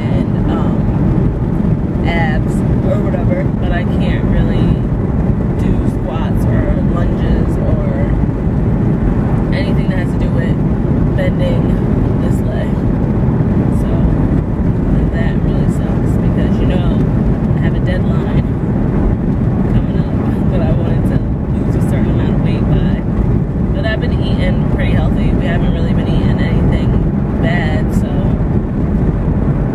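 Steady road and engine noise inside a moving car's cabin, with a woman's voice talking over it now and then.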